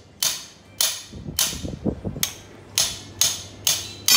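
Hammer blows on a steel drift against the rear axle trailing arm of a Peugeot 206, driving out a torsion bar: about eight sharp metal strikes at roughly two a second.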